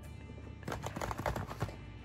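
A cardboard snack box being handled, giving a quick run of light clicks and taps through the middle second, over quiet background music.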